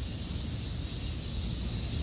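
Steady outdoor background noise: a low rumble and an even high hiss, with no distinct event.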